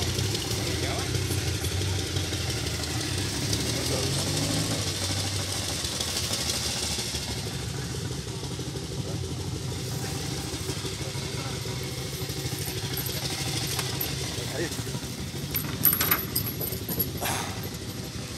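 Zündapp KS 750 sidecar motorcycle's flat-twin boxer engine idling steadily, with a few sharp clicks and knocks near the end.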